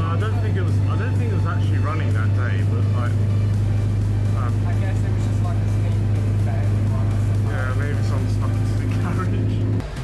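London double-decker bus running, heard from inside on the upper deck: a steady low drone from its engine and drivetrain, with voices over it.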